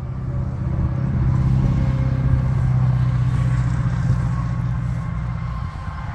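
A vehicle engine running steadily with a low, even hum, growing louder over the first second or so and easing off near the end.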